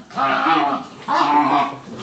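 Dog making drawn-out, pitched vocal calls while wrestling with another dog in play: two loud calls, each lasting well over half a second.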